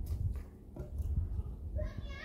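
Milk being poured from a glass measuring jug into a plastic blender jar, under low bumps and rumble from handling. A child's voice comes in briefly near the end.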